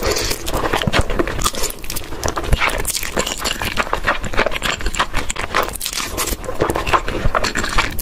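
Close-miked, loud slurping and chewing of jjajangmyeon (black-bean-sauce noodles), with a dense run of wet sucking and smacking mouth sounds.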